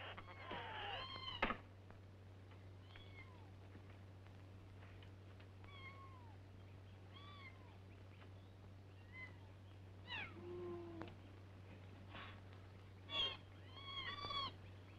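A cat and her kittens mewing: about ten thin, high mews that fall in pitch, spread out with gaps between them, and one lower mew about ten seconds in. A brief rustle comes in the first second and a half, over a low steady hum.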